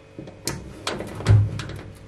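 Phillips screwdriver turning a screw in the sheet-metal underside of a kitchen extractor hood: a run of sharp metallic clicks and scrapes, with one louder thump about a second and a half in.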